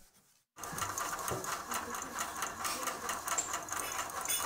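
A small machine running with a fast, even clatter, starting about half a second in.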